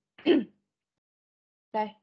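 A person clearing their throat once, briefly, about a quarter of a second in, with a falling pitch.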